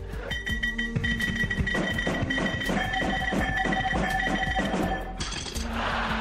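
Music with a quick, even beat and high held tones over it, changing to a noisier passage near the end.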